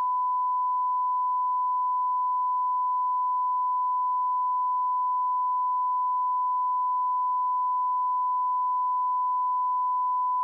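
Television test-card line-up tone: a single steady pure beep held unbroken at one pitch. It goes out with the colour bars while the channel is off air for technical maintenance.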